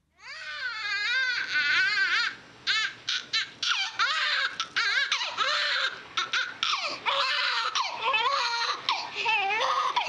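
Newborn baby, about two and a half minutes old, crying in repeated wavering wails with short breaks between them.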